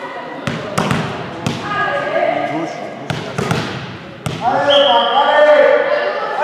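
A volleyball being bounced and struck in a sports hall: several sharp smacks with an echo over the first few seconds. From about two-thirds of the way in, girls' voices shout and call loudly over the play.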